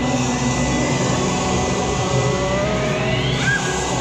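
The ride's loud rumbling sound effects as the ride gets under way, with a whoosh rising in pitch about three seconds in.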